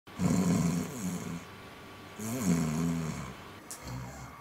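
A man snoring in his sleep, two long snores a second or so apart, followed near the end by the short click of a light switch being turned on.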